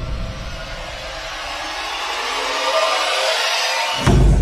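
Cinematic intro sound effect: a hissing noise swell that rises steadily in loudness and brightness. Its low end drops away just before the end.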